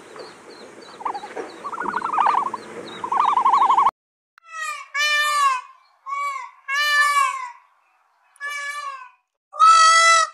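Peafowl calling: a series of six loud, wailing calls, each rising then falling in pitch, with short silences between and the last the loudest. Before them, for the first four seconds, a faint trilling call repeats over a rushing background until a sudden cut.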